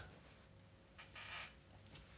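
Near silence: room tone, with one faint, brief soft noise about a second in.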